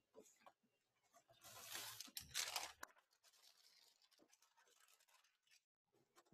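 Near silence, broken about a second and a half in by a soft rustle of tracing paper being handled, lasting about a second and a half.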